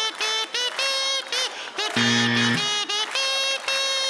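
Comb and paper (a comb covered with a thin sheet and hummed through) playing a melody of held, buzzy notes.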